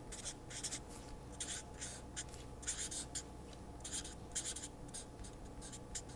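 Marker pen writing on paper: an irregular run of short, quick strokes as words are written by hand.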